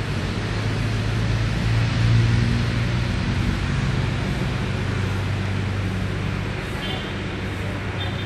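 Traffic noise: a motor vehicle's steady low engine hum that swells about two seconds in and then slowly eases, over a wash of outdoor noise.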